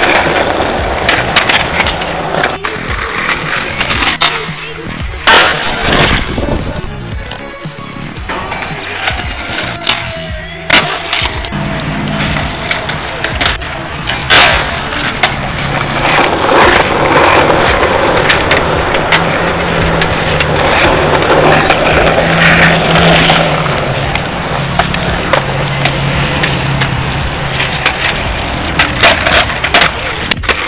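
Skateboard wheels rolling on rough asphalt, with sharp wooden clacks from the board being popped and landed in flatground tricks, under background music.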